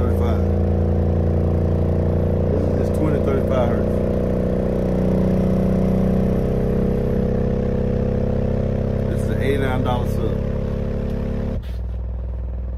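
Earthquake Sound Tremor X124 subwoofer playing a steady deep test tone in free air, with no enclosure, its cone making long excursions; the tone carries a buzz of overtones and drops abruptly near the end.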